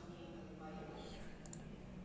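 Two quick, sharp clicks about a tenth of a second apart, about one and a half seconds in, over faint background voices.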